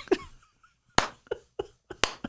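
A man laughing quietly in a few short, breathy bursts, with one sharp click about a second in.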